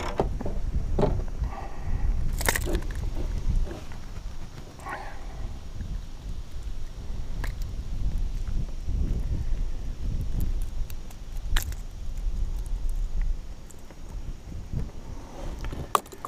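Low, unsteady wind rumble on the camera microphone, with a few sharp clicks and knocks from handling a caught fish and tackle in a kayak.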